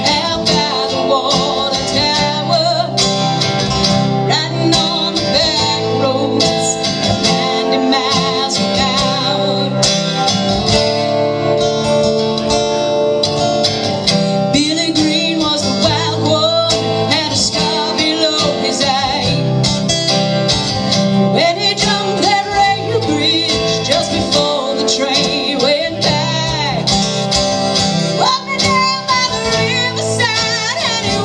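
Live country-folk duo: a metal-bodied resonator guitar and an acoustic guitar played together, with a woman singing over them.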